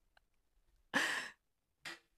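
A man's short, breathy sigh into a close studio microphone about a second in.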